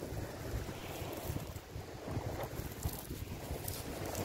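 Wind buffeting the microphone in uneven gusts, over surf washing onto a shingle beach.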